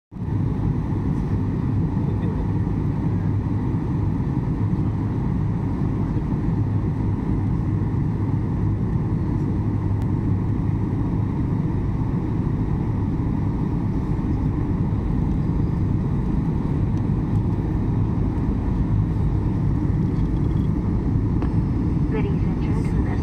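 Steady low roar of a jet airliner in flight, heard from inside the passenger cabin during the descent to land.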